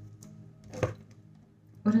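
Tarot cards handled on a tabletop: a faint tick, then a single sharp tap a little under a second in, over soft steady background music.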